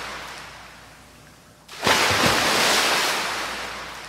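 Ocean surf: a wave washes out and fades, then a second wave breaks just before two seconds in and slowly fades away.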